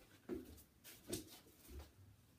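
A few soft taps and rustles, about three in two seconds, from a small shaggy dog dropping from its hind legs onto a carpeted floor and settling into a sit.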